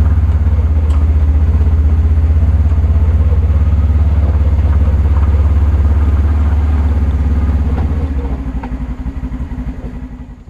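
Polaris General UTV engine running at low speed as it is driven up onto a trailer, a steady low rumble. It weakens and fades away over the last two seconds.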